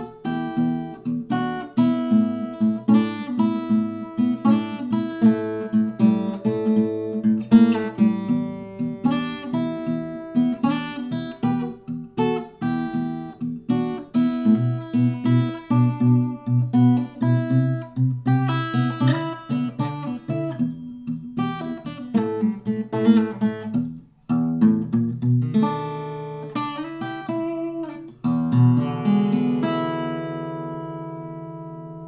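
Jean-Marc Burlaud parlor-size acoustic guitar, cedar top with walnut back and sides, played fingerstyle: a steady flow of picked notes, a short break about 24 seconds in, then a chord left ringing near the end.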